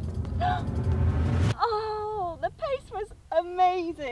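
A woman's drawn-out, wavering wordless cries and moans, the kind of 'ooh' sounds made while watching a putt roll. Wind rumble on the microphone runs under the first second and a half and then cuts off suddenly.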